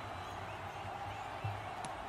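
Faint, steady background hiss with a soft tick near the end.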